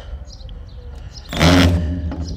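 Cordless drill set to hammer mode starting up about a second and a half in and running steadily. The bit is failing to open up the hole in the trailer panel.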